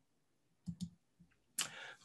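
Two quick, faint clicks from a computer control as video playback is paused, followed near the end by a short burst of noise.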